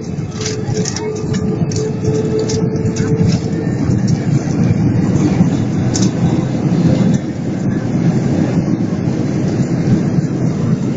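Jet airliner cabin noise during the landing roll: a loud, steady low rumble from the engines and the wheels on the runway. A steady hum fades out about three and a half seconds in, and there are a few light rattles.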